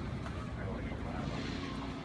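Steady low rumble with a faint hiss over it: background noise, with no distinct event in it.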